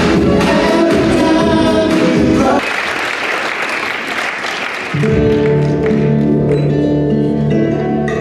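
A live pop song with lead and backing vocals over a band ends about two and a half seconds in, followed by about two seconds of audience applause; then music starts again with held instrumental notes.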